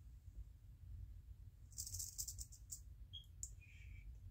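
A rattlesnake's rattle buzzing briefly in a stuttering burst of about a second near the middle, faint over a low room hum. Two short high squeaks follow near the end.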